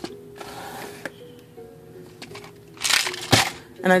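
Soft background music of slow held notes. About three seconds in, a short loud rattle as plastic jars of buttons are lifted off a shelf, with small clicks of handling before it.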